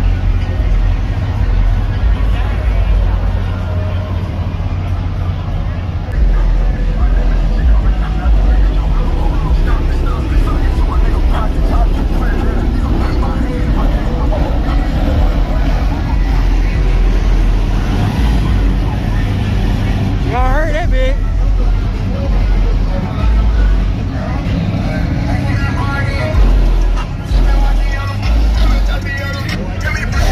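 Busy car-meet soundscape: people talking, bass-heavy background music and car engines running.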